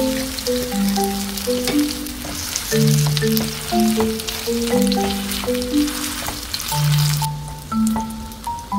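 Battered potato slices sizzling in oil in a frying pan, with small crackles, under background music playing a simple melody. The sizzle cuts off near the end, leaving the music.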